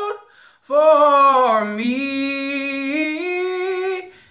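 A man singing a cappella: a short breath in the first half second, then one long held phrase that dips in pitch and steps back up.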